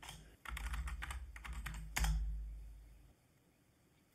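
Typing on a computer keyboard: a run of quick keystrokes, then one louder keypress about two seconds in.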